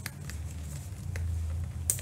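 Handling of a leather handbag with a few short, light clicks, the loudest near the end, as the metal hook of its detachable chain strap is worked at the bag's D-ring.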